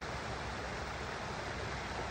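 A small brook running over a low dam, a steady rush of water.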